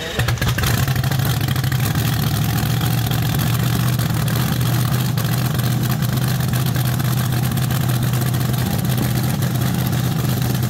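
Supercharged front-engine top fuel dragster engine on nitromethane catching abruptly right at the start, then running at a steady, loud idle.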